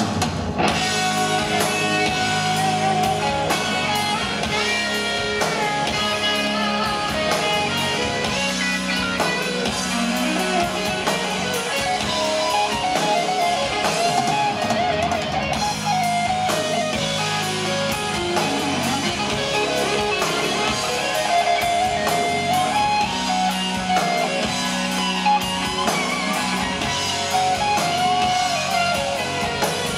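Live hard rock band playing an instrumental passage: a lead electric guitar plays a bending, wavering melody line over bass guitar and drum kit. The full band comes in right at the start, after held notes.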